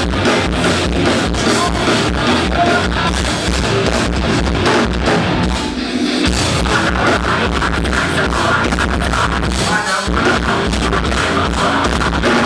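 Live heavy rock band playing loud: distorted electric guitars, bass and drum kit, with the low end dropping out briefly about halfway through.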